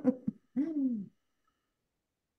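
A person's voice trailing off after a laugh into one short hum whose pitch rises and falls, then cutting off completely about a second in.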